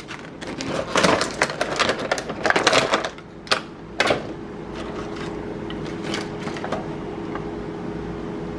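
Clear plastic packaging tray crackling and rustling as it is handled for about three seconds, then two sharp clicks about half a second apart. A steady low hum runs underneath.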